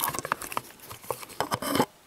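Hands handling an opened plastic cordless-drill battery-pack housing: a quick run of small plastic clicks and taps, with a louder scraping rattle near the end.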